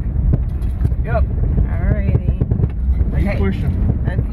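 Steady low rumble of a car driving, heard from inside the cabin, with snatches of a voice over it.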